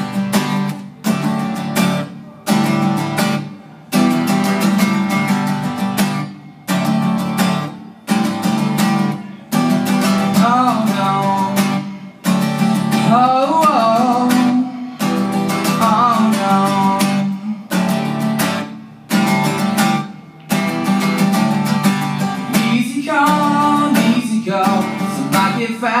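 Acoustic guitar strummed in a slow, steady rhythm, the chords broken by brief sudden stops every couple of seconds. From about ten seconds in, a man sings over it in stretches.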